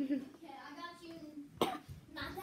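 A girl coughing, with a sharp cough about one and a half seconds in, after a brief muffled vocal sound: a dry, powdery food has caught in her throat.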